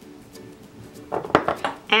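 Faint background music, then a few sharp clicks and knocks a little past a second in, from a plastic spice jar being shaken over a metal sauté pan and taken away.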